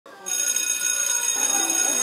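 A sustained high, bell-like ringing tone that starts about a quarter second in and holds steady, leading into the intro music.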